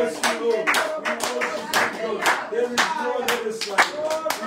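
Several people clapping their hands in a steady rhythm, about two claps a second, with voices rising and falling under the claps.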